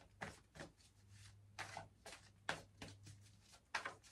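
Tarot cards being handled and shuffled in the hands: a few faint, irregularly spaced soft clicks and flicks, over a faint steady low hum.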